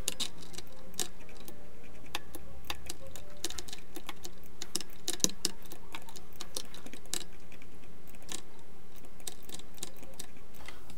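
Irregular clicking of a computer mouse and keyboard keys, several clicks a second with short pauses between.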